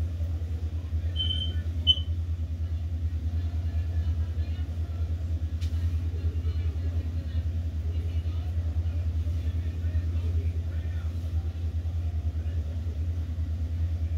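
A steady low rumble with no words over it, even in level throughout, and a couple of faint, brief high tones about one and two seconds in.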